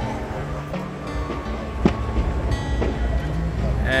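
Fireworks going off a distance away, heard as a sharp bang about two seconds in over a steady low rumble.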